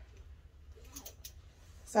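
Faint handling sounds from a bag's strap being worked with the fingers: a few small clicks and a light rustle about a second in.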